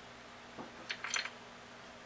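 A few light clicks and clinks of small reloading components being handled on a workbench, coming between about half a second and a second in.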